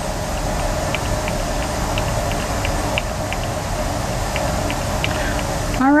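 Steady mechanical whooshing hum of a laboratory stirring plate running under a beaker, with faint, irregular light ticks; the noise drops away near the end.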